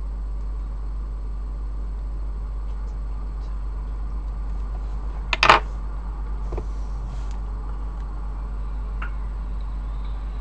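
A steady low hum with faint background noise, broken once about halfway through by a short, sharp sound.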